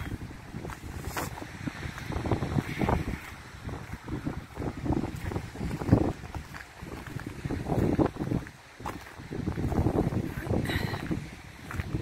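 Wind buffeting a phone's microphone outdoors: an uneven low rumble that swells and drops in gusts.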